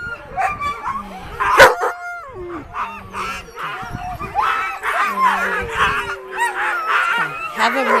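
Sled dogs barking, yipping and howling together, a busy chorus of short calls that rise and fall in pitch, with a sharp, loud bark about one and a half seconds in.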